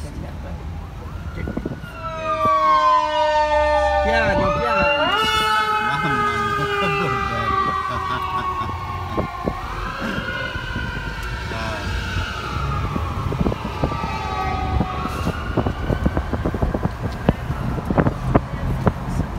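Emergency vehicle sirens wailing, starting about two seconds in, several sweeping tones overlapping as their pitch glides down and up, then slowly fading toward the end. A low rumble of street traffic runs underneath.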